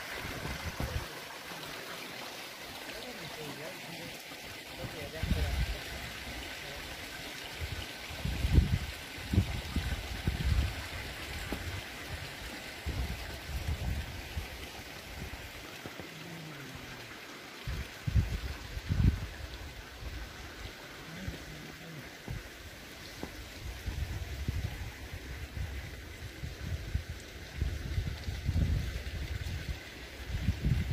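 Steady rush of water running from a hot spring, with irregular low buffeting on the microphone through much of it.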